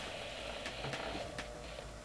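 Quiet room noise with a few soft clicks as a clock that had been making a weird noise is switched off.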